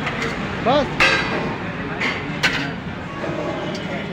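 Two sharp metal clanks about a second and a half apart from a wok and steel plates being handled while stir-frying rice, over steady background noise and voices.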